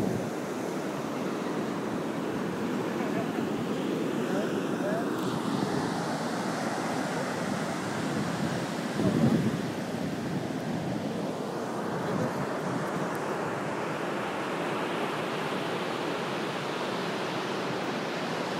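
Ocean surf breaking and washing up the sand shore, a steady rush of water, with wind on the microphone. A brief louder swell comes about nine seconds in.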